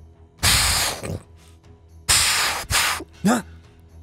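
Two sudden, loud hissing bursts of noise standing for a blast, each under a second and about a second and a half apart, followed by a short startled vocal 'huh'.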